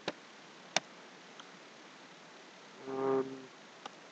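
Two computer mouse clicks about three-quarters of a second apart, then about three seconds in a short, steady, level-pitched hum lasting under a second.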